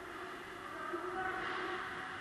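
Ice hockey rink ambience: a steady echoing din of distant play on the ice, swelling a little about a second in.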